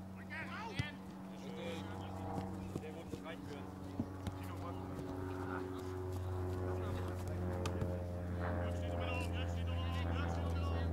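Football match sound: distant players shouting, now and then a sharp knock of the ball being kicked, over a steady low hum that gets louder in the second half.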